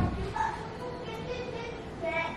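A high-pitched whimper: a few drawn-out, slightly wavering notes starting about half a second in.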